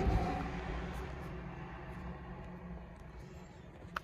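Low steady hum inside a car cabin, with a rushing noise that is loudest at the start and fades over the first second or two.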